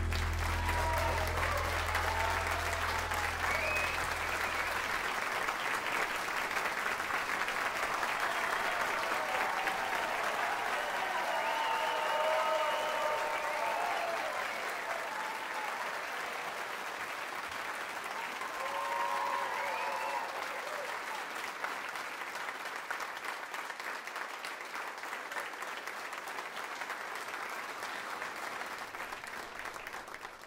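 A live audience applauding at the end of a song, with scattered cheers. A low sustained note from the band rings under the first few seconds, and the applause slowly thins out after about fifteen seconds.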